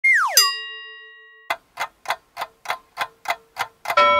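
Title-card sound effects: a quick falling whistle-like glide that lands on a bright ringing ding, then nine even clock-like ticks, about three a second, over a faint steady tone.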